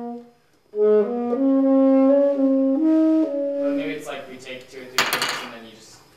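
Tenor saxophone playing a short phrase of sustained, changing notes, stopping about four seconds in. A brief loud rush of noise follows about five seconds in.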